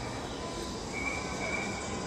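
Steady background hum and hiss of a large indoor hall. About halfway through, a thin high whine comes in and holds for just under a second.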